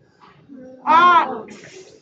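Speech: a voice sounding out a short word, a drawn-out 'o' vowel ending in a hissing 'ks'.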